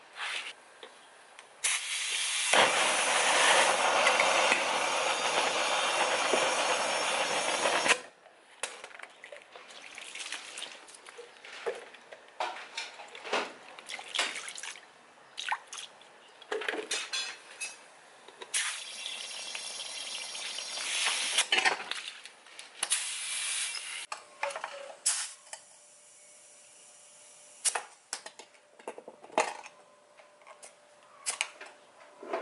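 Water poured from plastic bottles over a rubber tire, splashing onto the tire and the concrete floor. It starts with a loud, steady pour of about six seconds that stops abruptly, followed by scattered drips, splashes and handling knocks.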